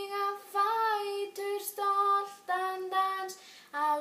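A young girl singing in Icelandic, holding each note for about half a second and stepping from pitch to pitch, with a short break for breath near the end.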